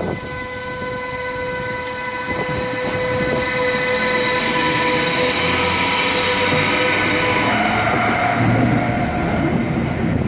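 DB class 101 electric locomotive hauling an Intercity train as it rolls past close by. The locomotive gives a steady electric whine that changes pitch about three quarters of the way through, over a rumble of wheels on rail that grows louder as it comes alongside.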